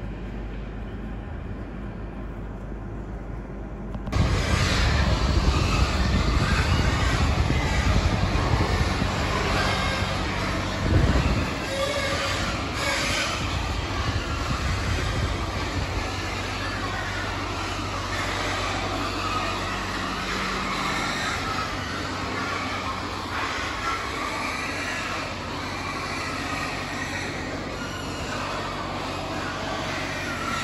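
Loud, continuous din of a large indoor pig barn, machinery hum mixed with the noise of many pigs, starting suddenly about four seconds in and easing slightly after the middle.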